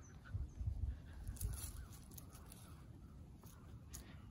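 Wind buffeting the microphone: uneven low rumbling gusts, strongest in the first second, with a few faint ticks.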